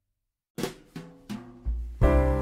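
A short silence between tracks, then a drum-kit intro of three sharp hits about a third of a second apart, with a deep bass note coming in near the end as the next song starts.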